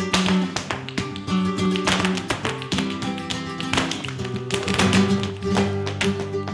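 Flamenco dancers' zapateado footwork: rapid, loud stamping of shoe heels and toes on the floor. Live flamenco guitar plays underneath.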